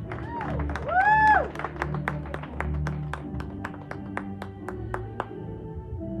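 Background music with steady low tones, under scattered hand clapping from the audience, with two rising-and-falling cheering whoops near the start, the second the loudest sound.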